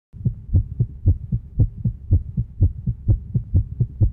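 Rhythmic low thumps, about four a second, strong and weaker in turn, with a faint steady hum beneath: a heartbeat-like intro sound effect.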